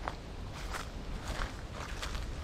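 Footsteps of a person walking on a paved path: about four steps, one roughly every 0.6 seconds, over a low rumble.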